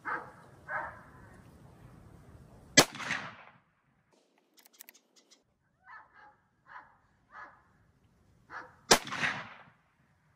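Two rifle shots from a scoped bolt-action rifle fired off a bench, about six seconds apart. Each is a sharp crack followed by a short rolling echo.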